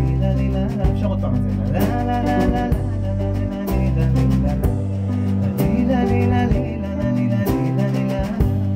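A small band playing an instrumental passage of a blues-style song: bass holding long low notes under sustained chords, with drum-kit cymbal hits every second or two.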